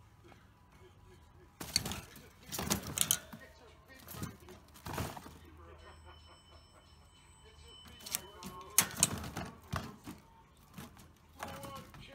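A hollow plastic ball knocking and rattling against the wire bars and tray of a rabbit cage, in several clattering bursts: about two seconds in, around four to five seconds, again from about eight to ten seconds, and once more near the end.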